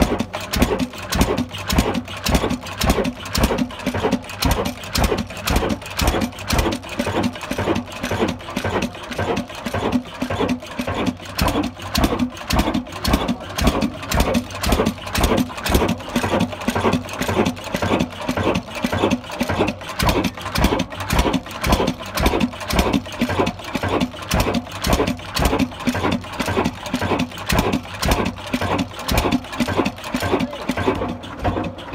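Old Ruston stationary diesel engine running at a steady speed, giving an even, rhythmic beat over a constant low hum.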